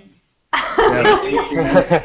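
Sound drops out completely for about half a second, then voices come through a video call.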